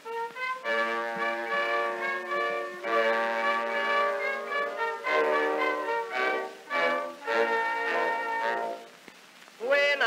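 Orchestral interlude from an acoustic-era 1911 Edison Amberol cylinder recording, with brass prominent, playing the melody between sung verses. The sound is thin, with no low bass, and drops away briefly near the end.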